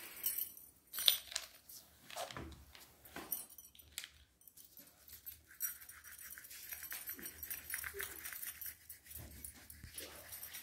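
Crayon scratching across paper on a clipboard in quick, rasping colouring strokes, steady through the second half. Before that come a few scattered taps and knocks.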